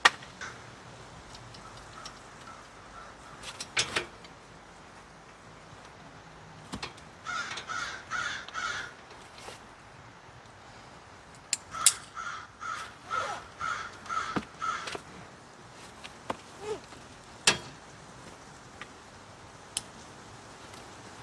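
A bird cawing in two runs of repeated caws, about five and then about eight, with scattered sharp clicks and knocks of gear being handled, the loudest near the middle and near the end.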